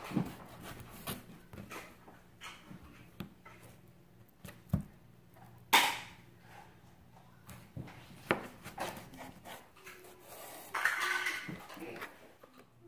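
Chef's knife slicing yellow pickled radish into strips on a plastic cutting board: a few scattered knocks of the blade meeting the board, the loudest about six seconds in, with soft handling noise between cuts.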